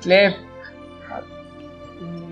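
A single short spoken word at the very start, then soft, sustained background music with held notes.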